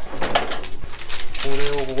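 Metal kitchen utensils clinking and rattling as they are handled in a utensil holder and cutlery drawer: a run of sharp clicks over the first second and a half. Near the end a man's voice comes in.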